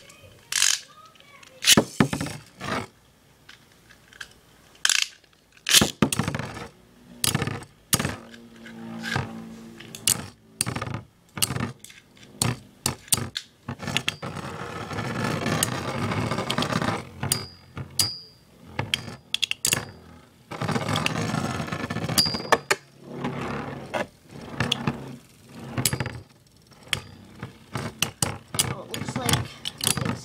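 Two metal Beyblade spinning tops, Dark Gasher and Flame Byxis, battling in a plastic stadium. They make many sharp clacks in irregular bursts as they strike each other, with two stretches of continuous rattling and scraping while they spin against each other near the middle.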